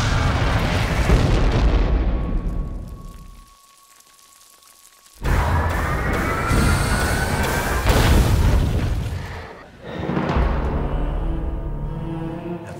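Film-trailer soundtrack: dramatic music over a loud deep rumble and booms that fade away, leaving a single held tone. About five seconds in, a sudden loud hit brings the music back with rising tones, followed by a short drop near the end and another swell.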